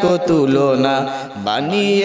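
A man singing an Islamic devotional song (gojol) into a microphone, holding long notes that glide from pitch to pitch, with a short breath about one and a half seconds in.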